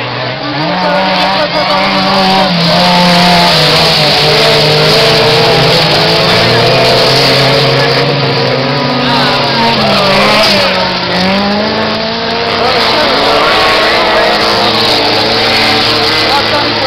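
A pack of autocross race cars running hard on a dirt track, several engines revving together, their pitches rising and falling as the cars accelerate and back off.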